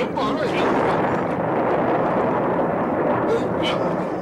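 Cartoon sound effect of water churning and splashing steadily as a big hooked fish struggles on the line, with excited voices faintly underneath.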